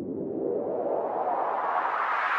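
Synthesized noise riser in a music track's intro: a whooshing sweep that climbs steadily in pitch and grows louder as a build-up.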